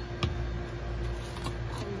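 A single sharp click about a quarter of a second in, from a spice jar being handled over the pan, followed by a few faint ticks, over a steady low hum.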